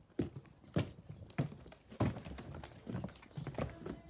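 Footsteps on a hard floor at an unhurried walking pace, about two steps a second.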